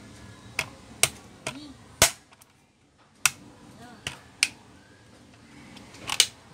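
Sharp plastic clicks and knocks from a portable Bluetooth speaker's plastic housing being handled and fitted back together, about seven in all, the loudest about two seconds in.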